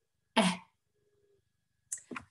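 A woman's voice saying one short, clipped 'eh': the short e sound that the 'ea' digraph makes in 'weather'.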